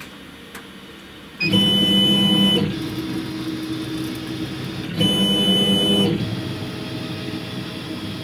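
Thunder Laser Nova 35 CO2 laser's stepper-driven gantry and head running a frame, tracing the job outline without firing. The motors whine with a steady high tone, starting about a second and a half in, with two louder stretches of about a second each and quieter running between and after.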